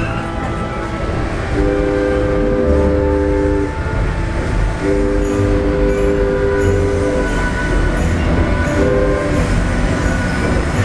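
Locomotive air horn sounding a chord of several notes in the grade-crossing pattern: two long blasts, a short one, then a long one beginning near the end, heard from inside a passenger car. Under it runs the low rumble of the moving train.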